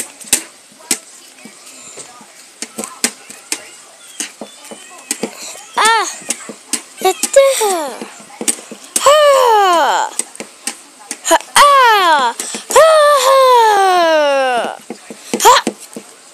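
A child's high voice giving a string of loud cries that fall in pitch, beginning about six seconds in, the longest near the end, in mock fighting. Before the cries there are quieter sharp knocks and taps from a toy doll being swung and bumped about.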